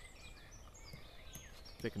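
Quiet outdoor background with faint bird chirps, several short high notes and little gliding calls; a man's voice comes back near the end.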